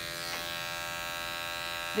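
Andis five-speed electric dog clipper fitted with a #40 blade, running with a steady hum as it skims hair from inside a dog's ear flap.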